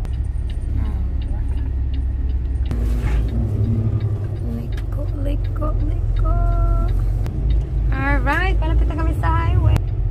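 Semi truck's diesel engine running as the truck pulls out and gets under way, a steady low drone heard from inside the cab.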